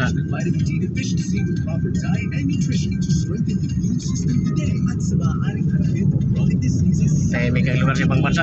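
Steady low rumble of road and engine noise inside a moving car's cabin, with faint voices over it that grow louder near the end.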